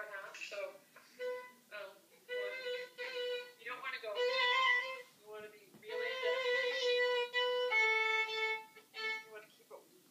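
Violin playing a slow phrase of held notes in a trill exercise, some notes wavering quickly as they are trilled, with a lower held note near the end.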